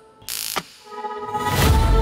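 Trailer sound design over music: a short noisy burst about a quarter of a second in, then a deep rumbling swell with sustained musical tones building from about a second and a half.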